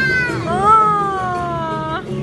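A child's excited shriek: a short falling cry, then one long drawn-out cry that slides slowly down in pitch.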